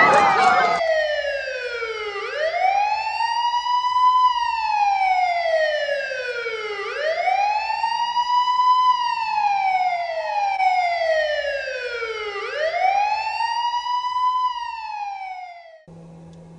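Police wail siren: a pitch that climbs over about two seconds and slides slowly back down, repeating about every four and a half seconds for three cycles, then cutting off abruptly near the end.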